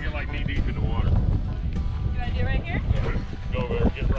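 Wind rumbling on the microphone, with several short bursts of voices over it.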